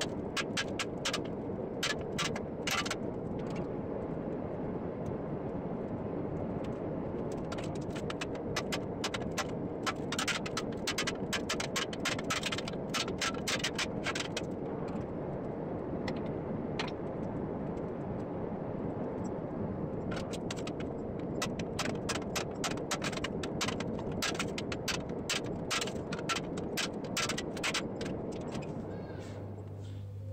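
Small ball-peen hammer tapping a steel breastplate in quick runs of light strikes as the twisted roping is chased into its raised ribs, over a steady rushing background noise. The strikes thin out for a few seconds around the middle, then come thick again.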